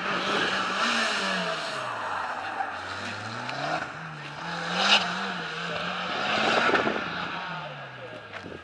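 Mitsubishi Lancer Evolution X's turbocharged 2.0-litre four-cylinder engine working hard through a cone gymkhana course. Its pitch rises and falls several times as the car accelerates out of turns and slows into them, over steady tyre noise, with a brief sharp sound about five seconds in.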